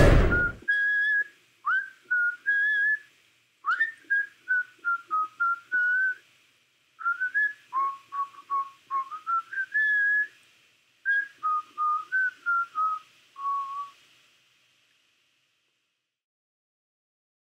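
A short burst of noise at the very start, then a whistled tune: four phrases of clear single notes stepping up and down, which stop about 14 seconds in.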